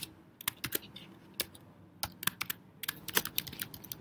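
Typing on a computer keyboard: separate key clicks at first, then a quicker run of keystrokes from about three seconds in.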